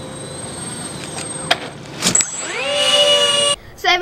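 Motors of a radio-controlled A-10 Warthog model with twin 64 mm ducted fans, in flight: a steady high whine over a rushing noise. About two seconds in comes a rising whine as the motors throttle up, and it stays loud until it cuts off suddenly near the end.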